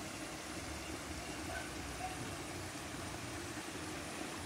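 Steady outdoor background noise: an even low rumble with a few faint, short chirps in the middle.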